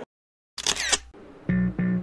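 Half a second of silence, then a short whooshing sound effect. About a second and a half in, a logo jingle of repeated plucked guitar notes begins, about four notes a second.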